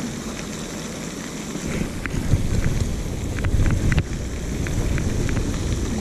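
Wind buffeting the microphone, with a steady hiss of splashing water from a pond's spray fountain underneath. Scattered light ticks come in about two seconds in.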